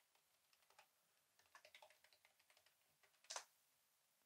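Faint computer keyboard typing: a run of light key clicks, then a slightly louder keystroke about three seconds in.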